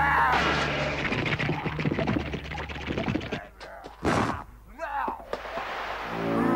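Cartoon sound effects of a monster tearing apart a cloth-covered metal dummy: a short growling cry, then about three seconds of rapid crunching and ripping hits, and a loud crash about four seconds in, followed by another brief cry.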